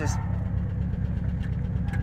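Volkswagen Beetle's air-cooled flat-four engine idling steadily, a low even rumble heard from inside the cabin.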